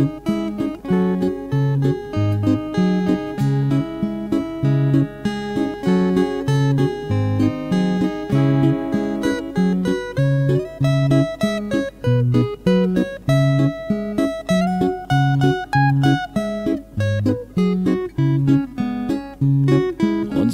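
Instrumental break of a song, with no singing. Guitar accompaniment keeps a steady repeating bass pattern of about two notes a second, and a melody line moves above it.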